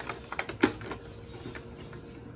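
Fingers picking at and pulling open a small numbered cardboard flap door on a Toy Mini Brands box: a quick run of small clicks and crackles in the first second, the sharpest just past half a second in.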